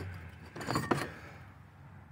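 Loose metal engine parts knocking and rattling briefly in a cardboard box as they are handled, a short cluster of light clicks about a second in.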